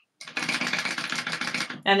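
Sewing machine running fast, stitching a seam through vinyl for about a second and a half, then stopping as a woman's voice begins.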